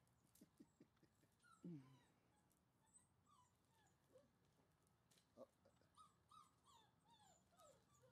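Faint, high whimpers and squeaks from five-week-old German Shorthaired Pointer puppies at play: many short falling cries scattered throughout, with one lower, louder falling cry about two seconds in.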